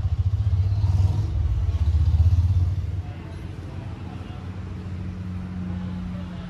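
A motor vehicle engine running close by, a rapidly pulsing low rumble that is loudest in the first three seconds, then drops to a quieter steady hum.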